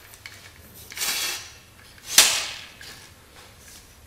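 Handling noise from a metal mic-stand tripod: a brief scuff about a second in, then a single sharp clack about two seconds in as it is knocked or set down on the workbench.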